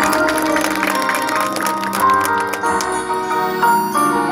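Marching band playing its field show: many instruments hold notes together over front-ensemble mallet percussion, with a quick run of struck notes in the first half.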